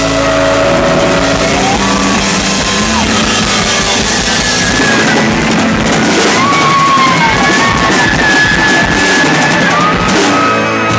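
Live rock band playing loud, with drum kit and guitar, while long held notes slide upward in pitch over it.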